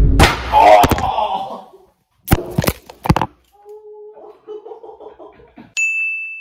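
A loud voice-like burst at the start, then a few sharp knocks or thuds about two and three seconds in, faint talk, and a short high beep near the end.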